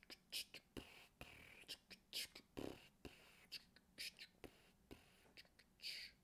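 Faint whispering under the breath: a string of short, hissy syllables with little voice behind them.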